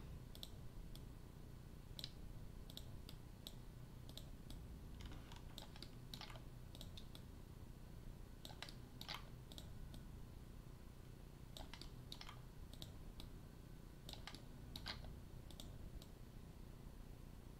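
Faint, irregular clicking of a computer mouse and keyboard, some clicks coming in quick clusters, over a low steady room hum.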